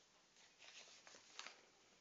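Near silence, with a faint rustle of newspaper being folded by hand in the middle.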